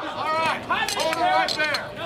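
Raised voices calling out with unclear words, high-pitched and strained. A few sharp clicks sound near the end.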